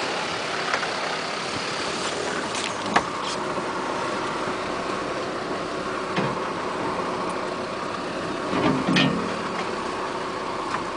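Four-wheel-drive vehicle's engine running at low speed, heard from inside the cabin as it crawls over a rough track. The sound is a steady hum, with a sharp knock about three seconds in and a few short bumps near six and nine seconds.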